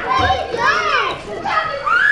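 Children's voices calling and squealing while they play, high-pitched and rising and falling in pitch, with a short lull about midway.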